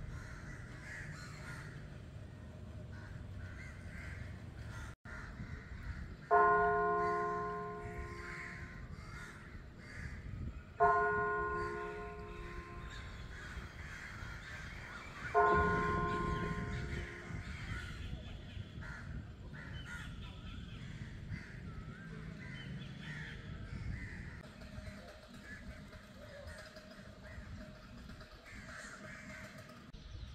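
A large bell struck three times, about four and a half seconds apart; each stroke rings out and slowly fades.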